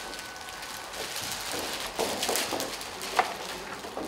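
Audience applause, a dense patter of many hands clapping that swells after about a second.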